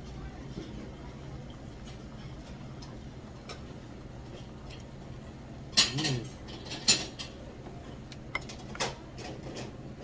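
Wooden chopsticks clicking against a small ceramic bowl while eating, in a few sharp clinks: two loud ones about a second apart just past the middle, then fainter ones. A steady low hum runs underneath.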